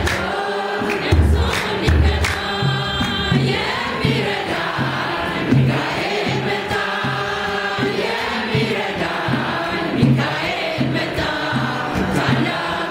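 Ethiopian Orthodox women's choir singing a hymn together, accompanied by a steady beat on a large kebero hand drum and by hand claps.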